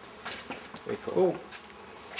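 A bee buzzing close to the microphone, its pitch bending up and down as it flies past, loudest about a second in.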